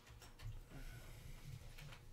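Faint handling noise of trading cards and clear plastic top-loaders on a desk: soft rustling with a few light clicks and low bumps.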